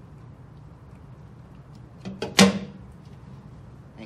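Outlet nipple of a Watts QT-101 closet carrier pushed through the wall plate into the carrier body, with one short clunk about two and a half seconds in as it seats.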